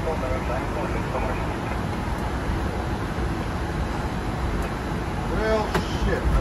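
Steady low rumble and hiss inside an airliner's cockpit as it taxis after landing, with a brief snatch of voice near the end.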